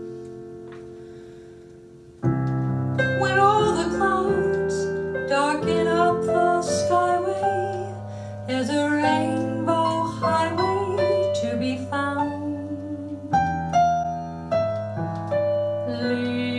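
Kurzweil digital piano: a held chord dies away, then about two seconds in the piano comes back in louder with flowing jazz chords. A woman's voice sings over it with vibrato, sustaining long notes.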